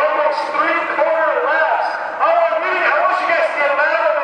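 Spectators' voices: several people talking over one another close by, with no clear words.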